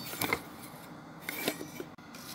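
A few short taps and rustles of a hand handling the phone that is recording, ending in an abrupt cut.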